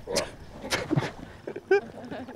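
Rocks knocking as they are shifted by hand: a few sharp knocks in the first second, then a brief high cry near the end.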